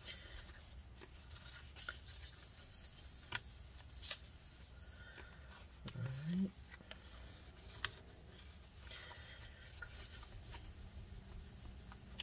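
Faint rubbing of a folded paper towel, wet with isopropyl alcohol, wiped back and forth over the bare aluminium battery bay of a MacBook Pro to clean off leftover residue. There are a few light clicks, and a short low rising sound about six seconds in.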